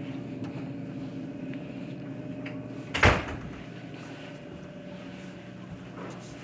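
Steady hum of a room air-conditioning unit blowing cold air, with one sudden loud thump about halfway through.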